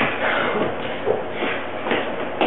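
Clothes being rustled and handled, with shuffling movement and a single knock about a second in, over a steady background hiss.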